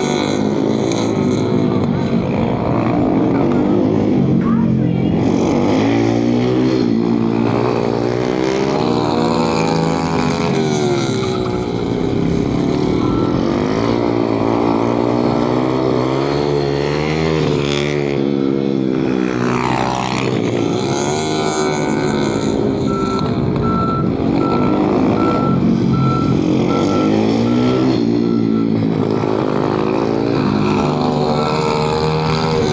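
Several motorcycle engines revving up and down over and over, their pitch rising and falling as riders accelerate and slow through tight turns. In the latter part a fast, high, repeating electronic beep sounds over the engines.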